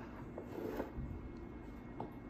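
Quiet room noise with a few faint, indistinct sounds.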